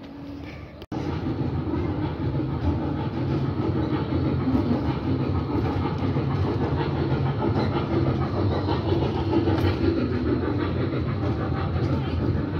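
Trackless ride-on road train with a toy steam-locomotive front going by, a steady running sound with low tones that starts abruptly about a second in.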